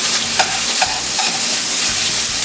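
Chicken pieces sizzling in hot oil in a skillet over a high gas flame, with a steady hiss: the sign that the oil is hot enough to brown the meat. A spatula stirs them and taps the pan three times, about half a second apart.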